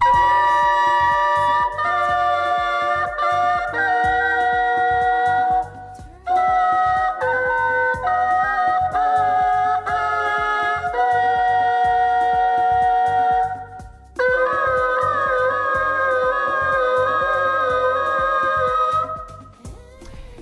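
Three vuvuzelas playing a slow classical melody in harmony. Held notes sound together as chords and change every second or two. The music falls into three phrases, with short breaks about six and fourteen seconds in.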